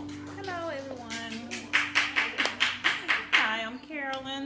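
A few people clapping at the end of a keyboard song, about five claps a second, with voices calling out over the clapping. The last held keyboard chord fades away at the start.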